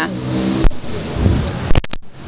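Street traffic: a car engine running past on a city street, with its low sound strongest a little over a second in. There are a few sharp clicks near the end.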